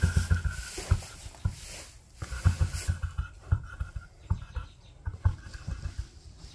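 Rustling and irregular low thumps in straw bedding as a newborn foal moves its legs.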